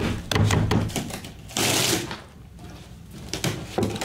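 Cardboard package being handled and opened on a table: a run of knocks and taps, then a short loud rush of noise about halfway through, and more small knocks near the end.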